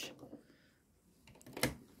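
Sewing machine stopped; near quiet, with one sharp click about one and a half seconds in from handling at the machine as the quilt is turned at a corner.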